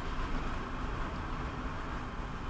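Steady road and engine noise of a car driving slowly, heard from inside its cabin, with a faint steady hum.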